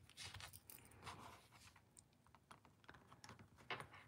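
Near silence: a few faint taps and light rustles as small die-cut paper pieces are handled and set down with tweezers on a crafting mat.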